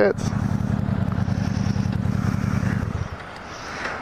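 Motorcycle engine idling with a low, even pulsing beat, switched off about three seconds in.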